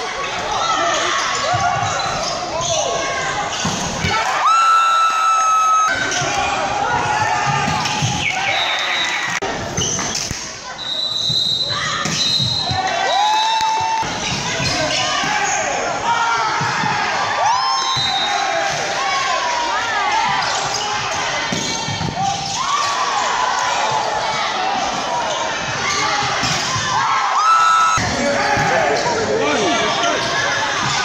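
Volleyball rallies in a large echoing sports hall: sharp smacks of the ball being served, spiked and bounced off the wooden floor, over continual shouting from players and spectators. A long whistle blast sounds about four seconds in, and a short one near the end.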